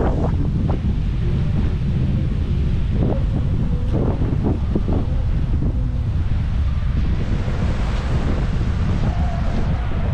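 Steady wind buffeting the camera microphone with a heavy low rumble, over the wash of small waves breaking on the beach.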